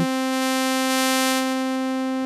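A synthesizer note held at one steady pitch: a sawtooth-like tone built by stacking sine-wave partials in Logic's Alchemy additive synth. Its tone control is being turned, which changes how loud the harmonics are, and the top harmonics dim a little about halfway through.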